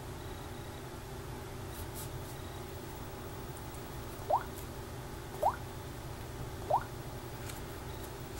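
Samsung Galaxy S3's water-drop touch sound from its loudspeaker, three short blips rising in pitch, about a second apart, as the screen is tapped through menus. A low steady room hum lies under them.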